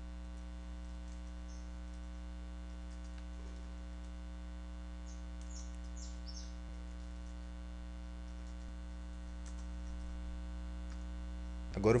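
Steady electrical mains hum in the recording, a low buzz with a stack of even overtones that holds unchanged.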